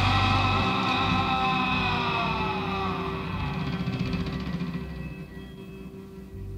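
Live progressive rock band's sustained chord ringing out and slowly fading away over several seconds, a few of its upper tones sliding slightly downward, over a steady low bass note.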